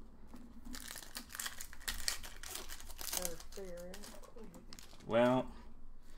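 Foil trading-card pack wrappers crinkling and tearing as packs are opened and cards handled, with a short low voice about halfway through and a brief vocal sound near the end.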